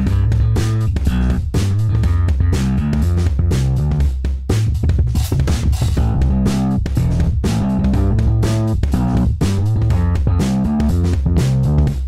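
UJAM Virtual Bassist SLAP virtual bass playing a funky bass line over a drum beat, with sharp regular clicks over the low notes. Its tone shifts as the plugin's Amp and EQ settings are turned during playback.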